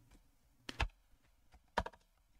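Computer keyboard keystrokes while editing code: two quick pairs of sharp key clicks, the first under a second in and the second near the end, with a few fainter taps between.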